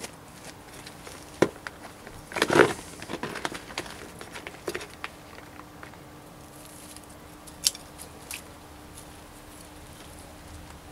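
Hand trowel scooping compost from a bucket, with a few sharp knocks and a short scraping burst about two and a half seconds in, then soft crackling as compost and soil are spread by hand around a plant.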